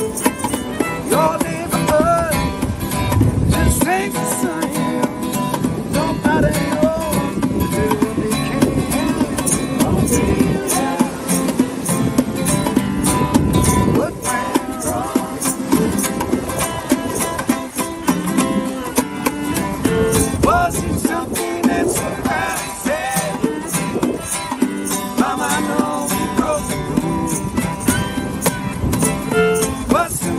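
Acoustic folk-rock band playing: strummed acoustic guitar, fiddle and a hand shaker. Near the end, voices are singing together.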